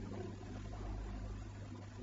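A pause in a man's speech holding only the recording's steady background hiss and a low electrical hum.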